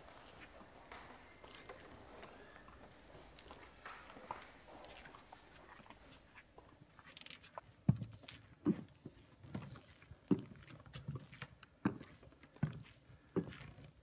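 High-heeled shoes walking on a wooden floor: faint at first, then from about eight seconds in clear, evenly paced heel strikes, a little under one step a second.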